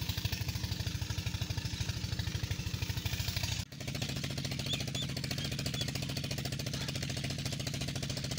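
An engine running steadily with a rapid, even knocking beat that does not change. It drops out for a moment a little over three and a half seconds in.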